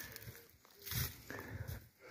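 A dog's faint, distant calls: two low, drawn-out sounds, the first about a second in and the second shortly after.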